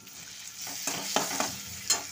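Onion, spice and tomato masala sizzling in hot oil in a metal wok while being stirred, with a steady frying hiss and several sharp knocks of the spatula against the pan, the loudest near the end.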